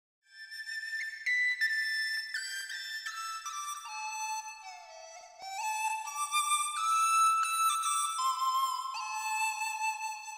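Background music: a solo flute playing a slow melody that steps downward over the first five seconds, then climbs back and holds a note near the end.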